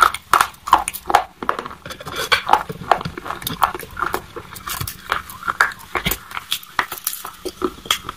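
Close-miked chewing of a mouthful of white chalk: an irregular run of sharp, crisp crunches, several a second, loudest at the start and slowly thinning as the pieces break down.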